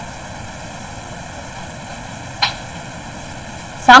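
Steady background hiss of the recording during a pause in the talk, with one brief short sound about two and a half seconds in; a woman's voice comes back right at the end.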